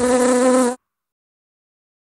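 A fly buzzing, a steady hum that cuts off suddenly under a second in.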